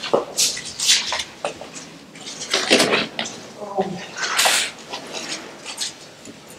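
Irregular footsteps scuffing and crunching over debris on a concrete tunnel floor, with a brief indistinct voice a little over halfway through.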